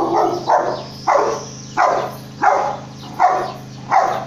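A dog barking repeatedly, about six barks evenly spaced roughly two-thirds of a second apart, over a steady low hum.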